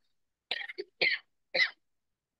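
A person coughing: three short coughs about half a second apart.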